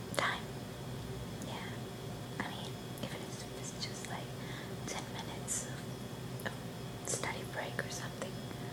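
A woman whispering close to the microphone, her words breathy and unvoiced, with sharp hissing 's' sounds standing out.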